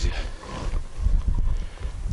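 Irregular low rumble of wind gusting against the camera microphone, with faint rustle and handling noise.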